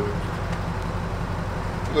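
A vehicle engine idling nearby: a steady, even low rumble.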